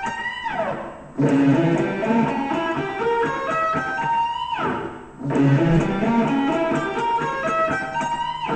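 Electric guitar playing an ascending diminished run, two notes per string, that ends on a slightly bent high note and a slide down. The run is played twice: a slide falls just after the start, another about five seconds in, and the second climb ends on a held note.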